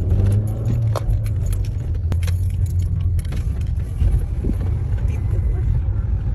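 Steady low rumble of a moving car heard from inside the cabin, with scattered knocks and clicks of a phone being handled.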